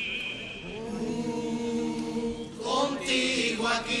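Chirigota chorus of male voices singing together, holding a long chord for a couple of seconds before moving into the sung lyrics near the end.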